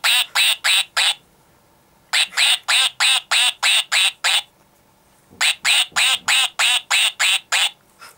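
Electronic quacking from the push-button sound chip in a plush duck toy: runs of identical quacks at about four a second, repeated three times with short pauses between.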